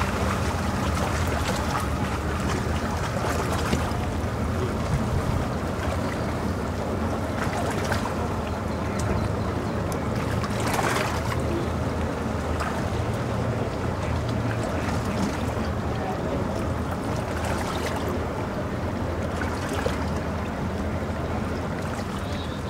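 Boat outboard motor idling at the dock, a steady low hum, with a few brief knocks now and then.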